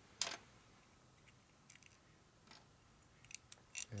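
Small metal clicks of steel shim washers being taken off a transmission shift fork and set down on a steel bench top: one sharper click just after the start, a couple of faint ticks, then a quick run of clicks near the end.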